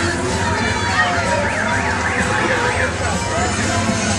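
Loud funfair din around a spinning chair-swing ride, with a siren-like wail whose pitch rises and falls quickly several times about a second in.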